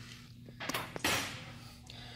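Automatic engine-block leak tester starting its test cycle: two sharp clicks about half a second in, then a short hiss of compressed air about a second in that fades away as the block is pressurized, over a steady low hum.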